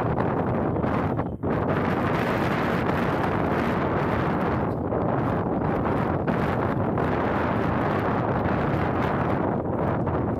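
Wind blowing across the microphone: a loud, steady rushing and buffeting noise with one brief drop about a second and a half in.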